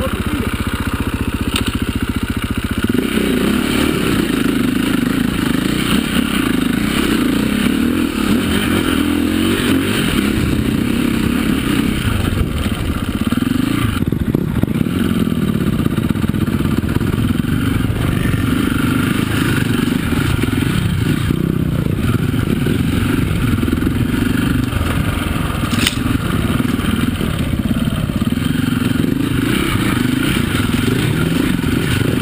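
Enduro dirt bike engine running under load on a rocky climb, its revs rising and falling unevenly, after a steadier note for the first few seconds. Loose stones clatter under the tyres.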